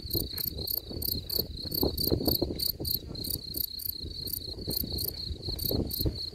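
A male European field cricket (Gryllus campestris) calling from its burrow entrance: a steady, shrill chirp repeated about four times a second, over a low rumble.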